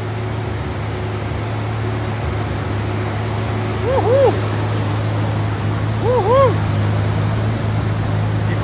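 Steady low mechanical drone in a dyno bay, with no revving or power pull. Two brief up-and-down tones come about four and about six seconds in.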